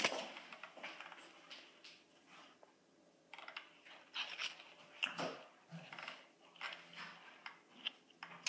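Playing card being handled and flicked: a sharp snap at the start, then quiet scattered clicks and rustles.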